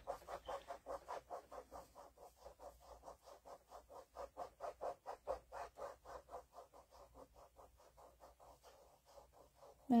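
Fingertips rubbing wet paper off a gel-medium image transfer in quick circles: a soft, rhythmic scratching of about five strokes a second that fades out near the end, as the paper layer comes away to reveal the printed image.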